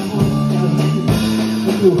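A live band plays a song: a drum kit keeps a beat with a heavy stroke about once a second, under sustained keyboard and guitar chords.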